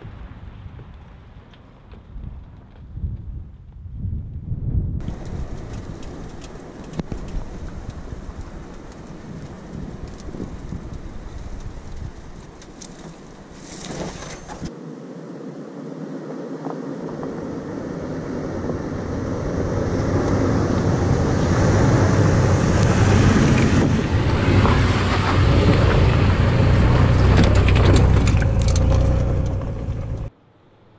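Toyota 4Runner SUV driving on a dirt track: a low engine rumble and tyre noise on gravel. In the second half it grows steadily louder as the vehicle comes close.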